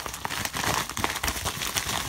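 Packaging crinkling and crackling as a mail package is handled and opened: a continuous run of rustles dotted with small clicks.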